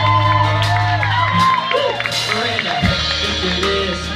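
Live band playing a country-pop ballad, with drums, bass and guitars under a sliding, bending melody line, and a few whoops from the audience.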